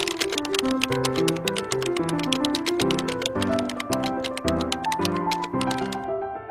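Background music: a melody of short pitched notes over a fast, even ticking beat.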